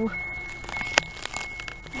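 Handling noise from a camera being pressed onto a Velcro mount inside a car: faint rubbing and scraping, with one sharp click about a second in.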